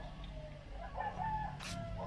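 Animal calls in several short pitched notes, the loudest about a second in, with a short sharp click near the end over a steady low rumble.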